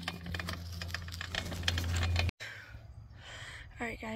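Bicycle being ridden: rapid irregular clicking over a strong low rumble of wind on the microphone, cut off abruptly about two seconds in and followed by quieter outdoor noise.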